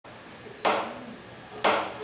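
Two sharp knocks about a second apart, each ringing briefly: a count-in just before a Chinese orchestra starts playing.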